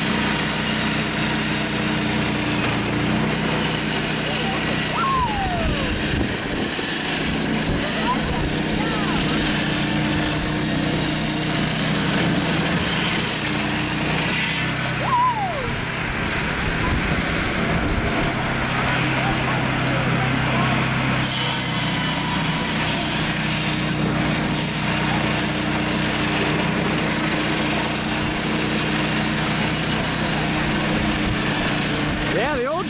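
Small air-cooled gasoline engine running steadily, driving a large circular ice saw through lake ice, with a hiss from the blade cutting the ice. The hiss drops away for several seconds midway while the engine keeps running.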